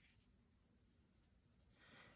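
Very faint scratching of a pen writing on paper, barely above near silence, growing slightly near the end.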